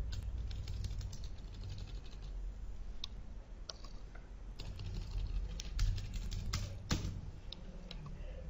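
Irregular clicking from a computer mouse and keyboard, in small clusters with pauses between, over a steady low hum.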